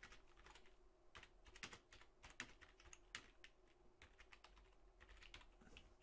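Faint computer keyboard typing: a run of irregularly spaced keystrokes.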